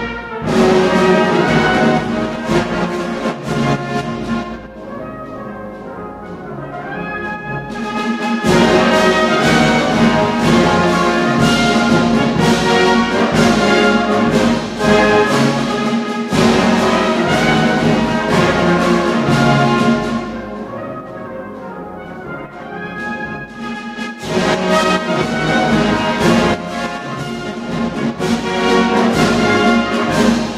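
Brass band playing a concert march, the full band loud with two softer, thinner passages, one about five seconds in and another about twenty seconds in.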